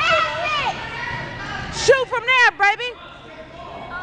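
Excited shouting from voices in a gym, high-pitched and in short bursts, over a general crowd murmur; the calls die down near the end.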